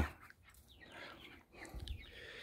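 Faint, soft clucking from chickens, a few short calls with quiet between them.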